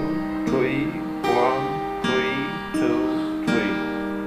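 Acoustic guitar with a capo, fingerpicked in an arpeggio pattern: a bass note, then the third, second, third, first, third, second and third strings. The notes are picked one by one, each left ringing into the next.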